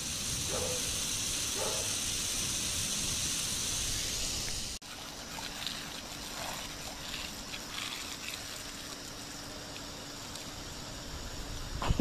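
Water spraying from a garden hose in a steady hiss. About five seconds in the hiss drops off sharply, and a quieter, uneven spray noise carries on.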